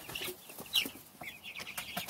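Young Cornish Cross broiler chickens, about a month old, giving a run of short, high calls, one falling in pitch about three quarters of a second in.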